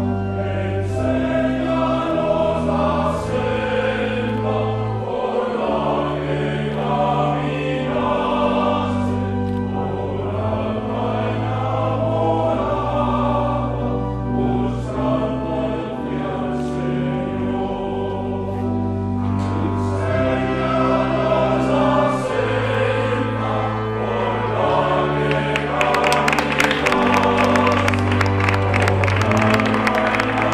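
Choral music: a choir singing slow, held chords over a deep bass line. About 26 seconds in, a dense rattle of sharp clicks joins in.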